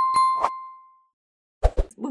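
A bell-like ding struck three times in quick succession, ringing out and fading over about the first second. Two or three short low pops come near the end.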